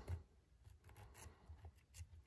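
Near silence with a few faint short scrapes: a small pocket-knife blade shaving the inside edge of a piece of wet leather.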